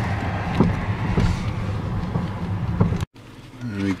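A car driving: steady engine and road noise heard from inside the moving car. It cuts off abruptly about three seconds in.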